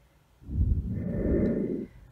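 A long breath out close to the microphone, a low, even rush of air lasting about a second and a half.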